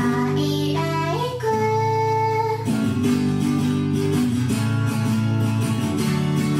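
Pop song with a sung vocal over strummed acoustic guitar: the voice rises to a long held note that ends a little before halfway, then the guitar carries on alone.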